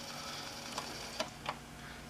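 Sony CFD-S01 boombox cassette deck rewinding a tape: a faint steady motor whir, with a few light ticks about a second in.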